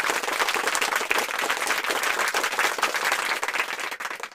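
Crowd applause: dense, steady clapping that thins out near the end.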